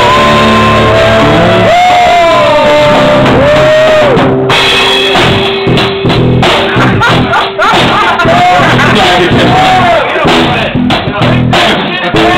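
Rock band playing loudly, a drum kit under a lead melody line that slides and arches in pitch.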